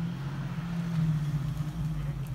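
Jeep engine running at low, steady revs as it drives through deep snow.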